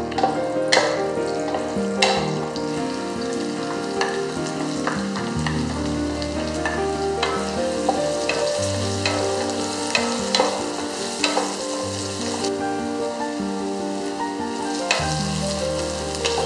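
Onion, garlic and ginger sizzling in hot oil in a non-stick pot while a wooden spatula stirs them, with sharp knocks and scrapes of the spatula against the pot about once a second.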